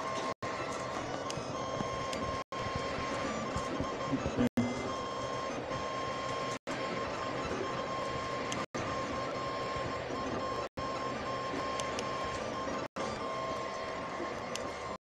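Diode laser engraver built on a 3D-printer frame running a raster engraving job: a steady whirring hum from its stepper motors and fans, with a held high whine. The sound cuts out for an instant about every two seconds.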